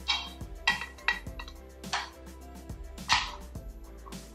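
Chopsticks clinking and scraping against a ceramic bowl while mixing noodles, with several sharp clinks, the loudest about three seconds in.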